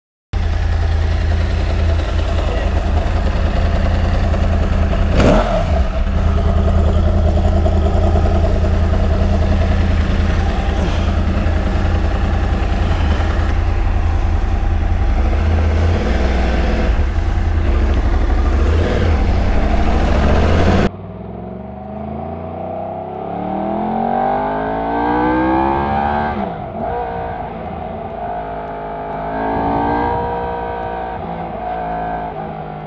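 Yamaha R1 inline-four with a Scorpion decat mid-pipe, loud and steady at idle, with one quick rise and fall in revs about five seconds in. After about twenty seconds the sound changes to the bike under way: revs climb as it accelerates, drop at a gear change, and climb again near the end.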